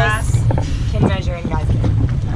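Steady low rumble of wind and boat noise on the open water, with short snatches of voices.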